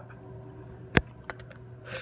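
A single sharp click about halfway through, followed by a few faint ticks, over a low steady hum.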